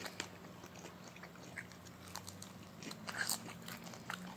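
A child chewing a mouthful of food, with soft, scattered mouth clicks and smacks, a few a little louder about three seconds in.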